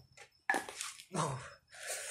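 A man's short, strained breaths and a grunt during exercise, in three brief bursts about half a second apart.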